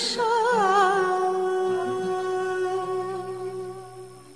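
The closing phrase of a Turkish classical art song: a woman's voice winds through wavering melismatic ornaments, then settles on one long held note that slowly fades out. Low instrumental accompaniment sounds under it.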